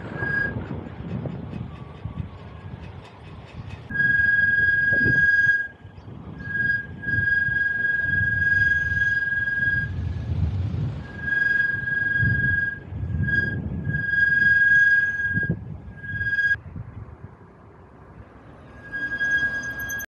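Bicycle brakes squealing: a steady high-pitched squeal that comes and goes in stretches of a second or more as the brakes are applied and released, over low wind rumble on the microphone.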